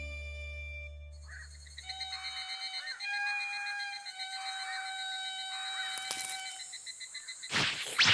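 The last chord of the theme music fades out, then a faint rural evening ambience of animal calls sets in: steady high tones with a soft pulsing call about once a second. A sudden loud, noisy sound starts just before the end.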